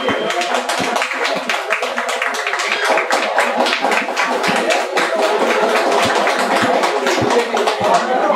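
Audience clapping, dense and irregular, mixed with crowd chatter.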